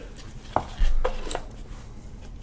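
Rigid trading-card box and its lid being handled by gloved hands on a tabletop: a few sharp clicks and taps, with a heavier thump about a second in.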